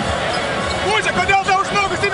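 Speech: a man's raised voice in a noisy, reverberant arena over the crowd's din.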